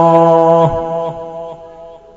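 A male voice holds a long, steady note of Quran recitation at the end of a verse phrase. The note drops briefly in pitch and stops about two-thirds of a second in, and its echo fades away over the next second.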